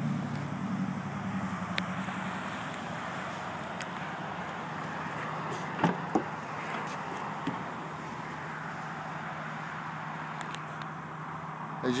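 Steady outdoor hiss with a sharp click and thump about halfway through as the rear liftgate of a 2008 Chevrolet HHR is unlatched and opened.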